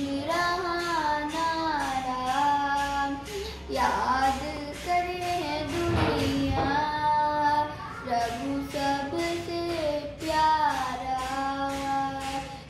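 An 11-year-old girl singing a Hindi devotional song solo, holding long, bending melodic notes, over an accompaniment with a steady beat.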